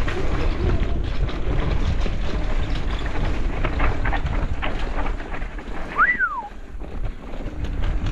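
Wind buffeting a bike-mounted camera's microphone while riding a bicycle over a bumpy dirt singletrack, a continuous low rumble with sharp knocks and rattles from bumps around the middle. About six seconds in, one short whistle rises and then falls.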